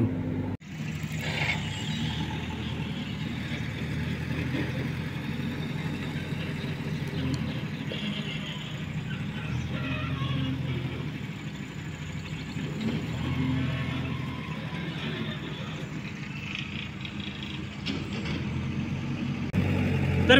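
An engine running steadily: a continuous low hum with a faint noisy haze above it, swelling a little about two-thirds of the way through.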